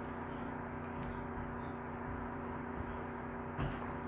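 A steady low electrical hum with an even buzzing tone, unchanging throughout, with a faint knock of handling near the end.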